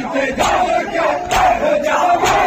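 A crowd of men chanting a noha together, with the sharp slaps of palms beating bare chests in matam, two strikes about a second apart.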